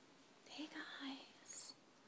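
A woman's soft, faint whispered words, ending in a short hissing "s" sound.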